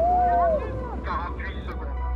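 Voices shouting: one long wavering call held for about a second, then a few short shouts, over a steady low rumble.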